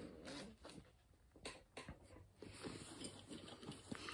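Faint rustling and small clicks of hands rummaging through a fabric EDC satchel for the next item.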